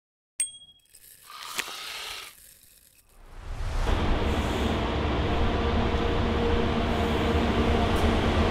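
A short intro sound effect: a brief metallic ding, then a swelling whoosh with a click. From about three and a half seconds in, a Higer coach's engine running with a steady low rumble as the bus drives slowly in.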